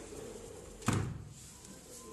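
A PVC sliding window sash bumping against its frame: one short thud about a second in.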